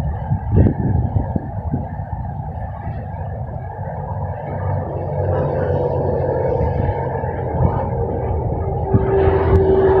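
Wind blowing on the microphone: a steady low rumble that grows louder toward the end, with a steady hum joining about nine seconds in.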